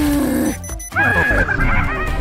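Cartoon sound effects over background music: a falling tone slides down in the first half second, then about a second in comes a wavering, warbling cry with falling pitches beneath it.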